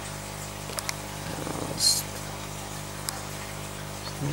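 Steady low hum of running aquarium equipment, with a few light clicks and a short hiss about two seconds in.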